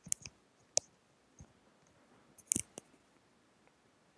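A few sharp clicks from a computer mouse, spaced irregularly, with the loudest cluster about two and a half seconds in.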